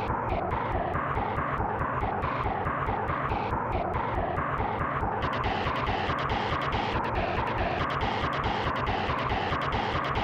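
Sparta remix music, heavily distorted and crunching, with a driving beat of about four strokes a second. About five seconds in the sound turns brighter and harsher.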